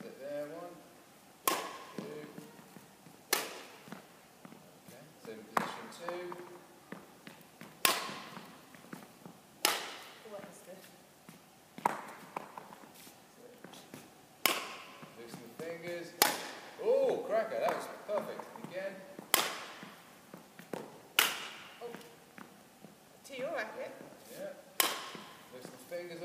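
Badminton racket striking shuttlecocks in overhead clears, a sharp crack about every two seconds, a dozen or so in all, each ringing briefly in a reverberant sports hall. Faint voices come between some of the hits.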